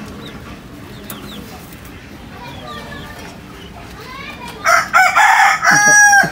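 A rooster crowing loudly, starting about three-quarters of the way in with a rough opening and ending on a long held note. Before it, faint short bird chirps.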